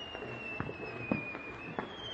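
Festival firecrackers popping a few times, the sharpest about a second in. Over them runs a thin high whistling tone that falls slowly in pitch and starts again higher near the end.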